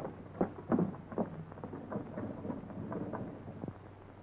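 A few irregular footsteps and knocks of shoes on a hard floor, most of them in the first second or so and fainter afterwards, over the steady hum and hiss of an old film soundtrack.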